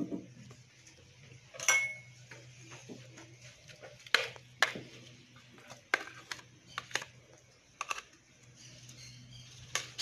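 Light knocks and clinks of a spoon and blender jar as a thick paste of soaked bulgur is scraped and tipped out into an enamel basin, a scattering of separate taps. A faint steady low hum runs underneath.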